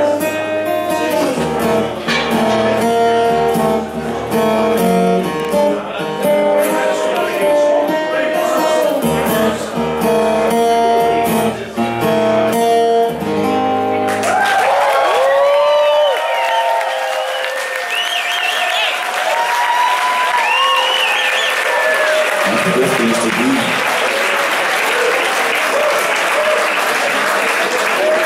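A solo guitar plays the song's closing chords. About fourteen seconds in the music stops and the audience breaks into applause, cheering and whistling, which carries on to the end.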